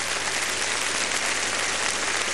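Audience applauding steadily as the song ends.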